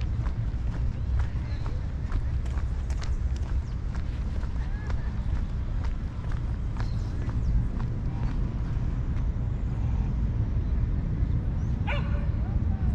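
Footsteps of a person walking, as short irregular clicks over a steady low rumble on the microphone, with indistinct voices in the background.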